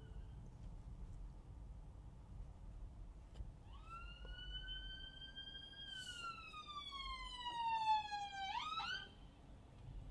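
Ambulance siren heard from inside a car, coming in about four seconds in: its tone rises slightly, glides slowly down, then sweeps sharply up and stops near the end.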